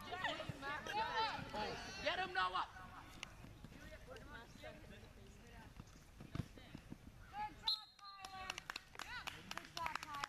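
Voices of players and spectators calling out across an outdoor soccer field, in bursts in the first couple of seconds and again near the end, with open-air background noise between.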